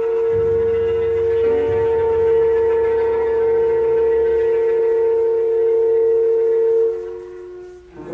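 A chamber ensemble playing modernist concert music: one long sustained note with low held tones beneath it for the first half. The held note fades away near the end.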